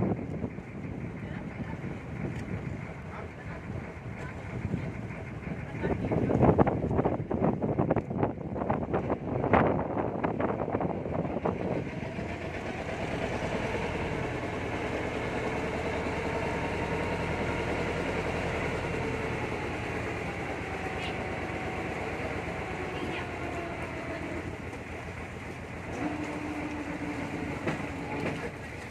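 Small wooden water taxi's engine running under wind and water noise. It then settles into a steadier hum that slowly drops in pitch as the boat slows to come alongside the jetty steps.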